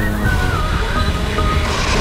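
Background music with a held, gently gliding melody line over a full low end.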